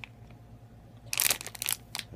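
Crinkling of a plastic grab-bag toy package being handled and turned over, a short burst of crackles about a second in.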